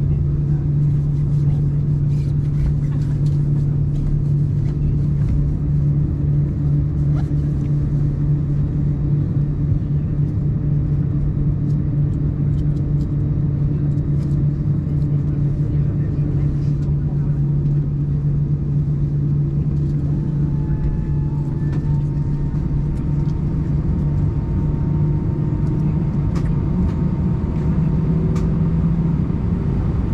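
Steady cabin drone of an Airbus A320 on the ground, with its engines at idle and air conditioning running: a strong constant low hum with rumble beneath. About twenty seconds in, a thin higher whine comes in, steps up slightly and holds.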